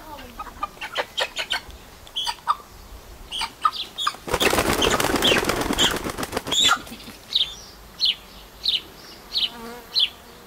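Chickens clucking in short scattered calls. About four seconds in, chickens held upside down by their legs flap their wings hard for about two and a half seconds. Then short high calls repeat about every two-thirds of a second.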